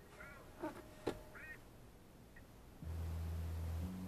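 Faint sounds in a car cabin as a Bluetooth receiver's knob is worked to skip to the next track: a few short squeaky chirps and a sharp click in the first half, then a low steady hum for about a second near the end.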